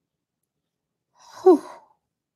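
Near silence, then, about a second and a half in, a woman's short breathy sigh, "whew", breaking off her sentence.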